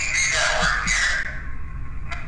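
A harsh, raspy burst of static-like noise from the small speaker of a handheld ghost-hunting device, fading out about a second and a half in.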